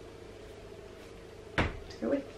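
A single short knock about one and a half seconds in, over a faint steady hum.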